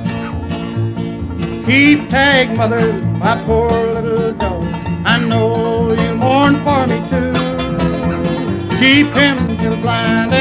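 Bluegrass band playing live: banjo and guitar over a rhythmic bass, with a lead melody line that wavers with vibrato and swells about two seconds in and again near the end.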